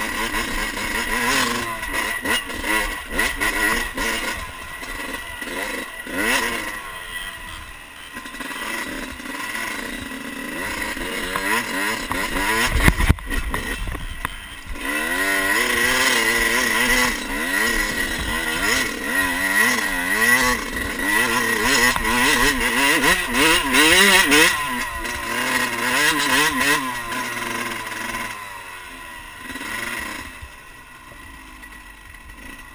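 Dirt bike engine heard from on the bike, revving up and down with the throttle over a rough trail, its pitch rising and falling constantly. A heavy thump comes about 13 seconds in, and the engine drops to a lower, quieter note near the end.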